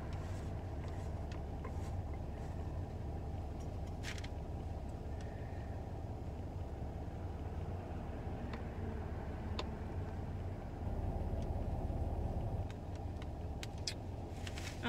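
Steady low vehicle rumble heard inside a car cabin, swelling for a couple of seconds near the end. A few light clicks come from a small plastic jar of loose setting powder being handled.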